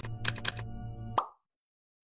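A short edited-in sound-effect sting of about a second and a quarter: a few sharp hits over held musical tones, ending on a final hit, then silence.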